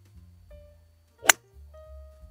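A single sharp click of a 4 hybrid striking a Nitro Elite Pulsar Tour golf ball about a second in, a solidly struck shot. Soft guitar music plays underneath.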